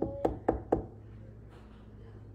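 Four quick, sharp knocks in a row, about four a second, followed by a low steady hum.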